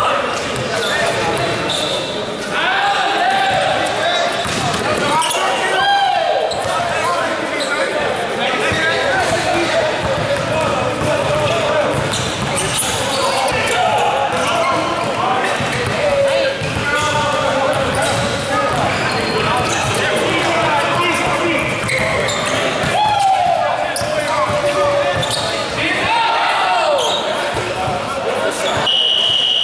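A basketball bouncing on a hardwood gym floor while it is dribbled, with many short impacts. Voices call out throughout, echoing in a large hall.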